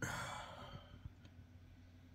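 A man sighs, a breathy exhale that fades away over about half a second, then a faint tick about a second in.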